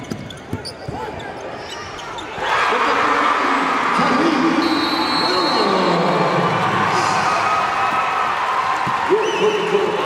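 Basketball dribbling and sneaker squeaks on a hardwood court. About two and a half seconds in, a sudden, much louder sustained mass of voices begins, shouting and cheering, and holds to the end.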